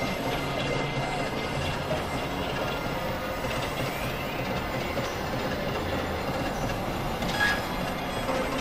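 Experimental electronic noise piece: a dense, steady, grinding wash of noise with faint wavering tones threaded through it and a short brighter tone near the end.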